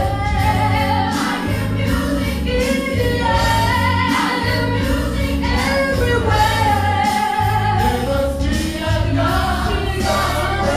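Gospel choir singing live with mixed voices over a pulsing bass line.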